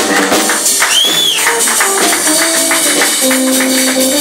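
Live small-group jazz: cymbals keep time over bass and piano notes, and a high note swoops up and back down about a second in.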